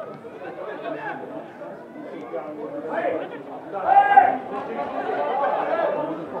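Men's voices calling and shouting to one another during a football match, several overlapping, with one loud, drawn-out shout about four seconds in.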